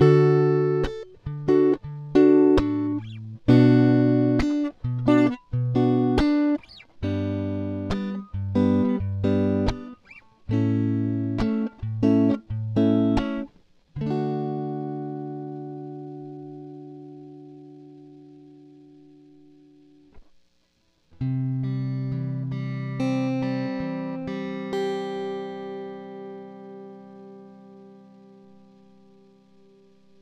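Fender Stratocaster electric guitar on its neck pickup, tuned to equal temperament, playing a short chord passage. It starts with about fourteen seconds of quick chords and notes, then a chord rings and slowly fades. After a brief break, a final chord and a few picked notes die away.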